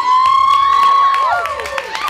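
Audience cheering: several high whoops that rise in, hold steady for about a second and then fall away, with scattered hand claps.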